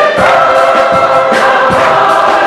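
Church choir singing held chords with flute and violin accompaniment, the chord changing shortly after the start and again past halfway. A drum beats steadily about twice a second underneath.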